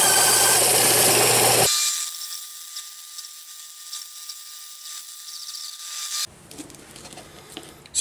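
Bandsaw cutting through a black Delrin plastic rod: loud, steady cutting noise over a low hum for about the first second and a half. It then drops abruptly to a much quieter stretch with a thin steady whine, which stops suddenly about six seconds in.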